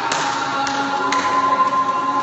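Several voices holding long, steady notes at different pitches together, with a few light taps in the first second.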